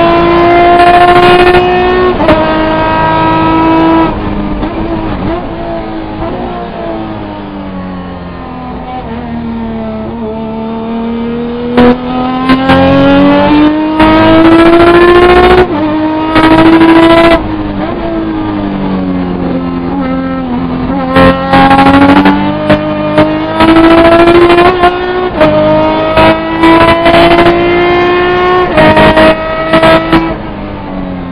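Race car engine heard loud from inside the cockpit under hard driving. Its pitch climbs steadily, then drops sharply at each gear change, again and again, with a longer fall and recovery in the middle where the car slows and picks up speed again.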